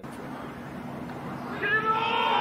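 Golf gallery crowd on a broadcast feed: a murmur at first, then from about one and a half seconds in many spectators' voices rising together in drawn-out shouts as a putt rolls toward the hole.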